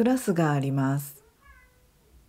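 A cat's meow: one drawn-out call with bending pitch that ends about a second in, followed by a faint short tone.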